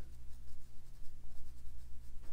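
Paintbrush strokes on watercolour paper, a faint scattered brushing, over a steady low hum.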